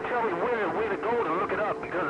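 Incoming transmission over an HF radio transceiver's speaker: a strong signal carrying a warbling, wavering voice-like sound.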